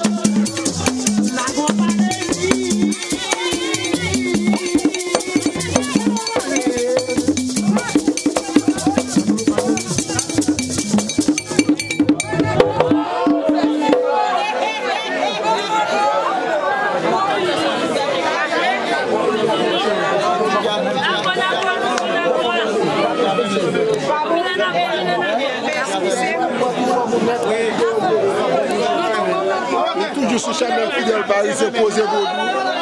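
Vodou ceremony drums playing a fast, even rhythm for the first half. About thirteen seconds in the drumming stops and a crowd of overlapping voices carries on.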